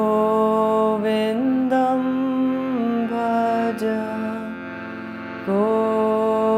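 A woman's voice chanting a Hindu devotional mantra in a slow sung melody, holding long notes that step up and down, over a steady drone. The voice drops away for a moment and a new phrase begins near the end.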